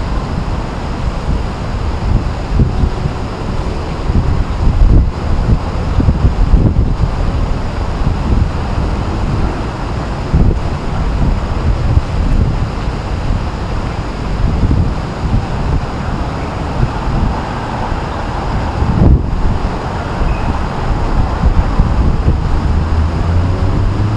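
Wind buffeting the camera microphone in irregular gusts, a low rumble over a steady background hiss.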